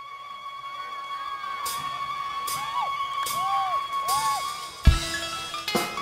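Live Sundanese bamboo flute (suling) music: a long held high note with bending, rise-and-fall phrases beneath it and light cymbal strikes about every 0.8 seconds. Near the end, the full band comes in on a loud drum hit.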